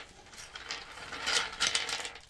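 Small hard cast-resin pieces clicking and clattering against each other as a handful is scooped up. It is a quick run of light clicks that gets busier in the second half.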